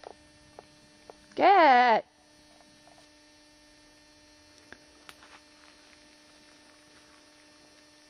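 A short wavering vocal sound, a warbling 'ooo' whose pitch wobbles several times, about a second and a half in. Under it, a steady electrical hum from the tape recording and a few faint ticks of handling.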